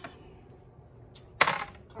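A single sharp clack about a second and a half in, the loudest sound here: the plastic debubbling tool being put down hard among the glass canning jars.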